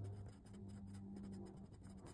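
A pen writing on paper: faint, short scratching strokes, over a low steady hum.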